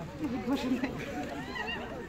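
Indistinct voices of several people talking at once in the background, their pitches wavering and overlapping.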